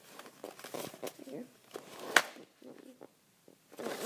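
A hockey chest protector being handled, with light rustling and one sharp click a little over two seconds in.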